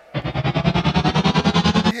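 FRC field's match-start sound effect: a loud electronic tone pulsing about eleven times a second and rising slowly in pitch, marking the start of the match, cutting off abruptly near the end.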